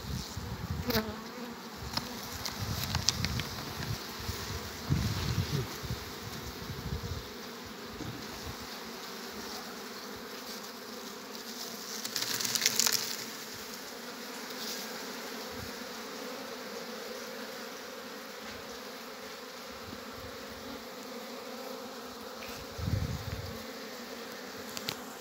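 Steady hum of a honeybee colony in an opened hive. Over it come rustling handling noises as the hive's cloth cover and a plastic syrup feeder bag are moved, with a brief louder crinkle about halfway through.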